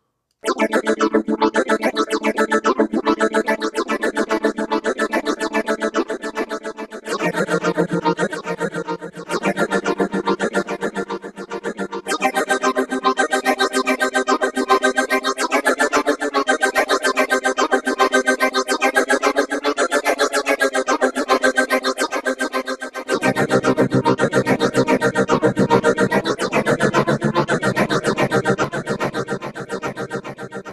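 PPG Phonem software vocal synthesizer playing held chords as a fast, tempo-synced chain of repeated sung syllables, which makes a rapid, even pulse. The chord changes about 7, 12 and 23 seconds in.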